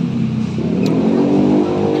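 A motor vehicle engine running steadily close by, with a slight dip in its note about half a second in.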